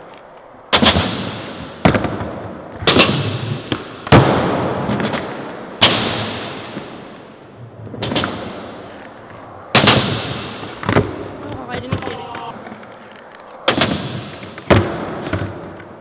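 A skateboard repeatedly popping and slapping down on a concrete floor during fakie shove-it attempts: about nine sharp cracks, each ringing out in a long echo in a large hall.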